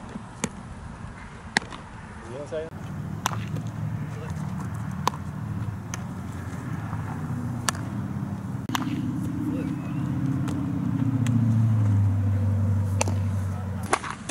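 Sharp knocks of infield practice, baseballs struck with a bat and popping into a leather glove, every second or two. From about three seconds in, a low engine hum grows steadily louder and then cuts off abruptly at the end.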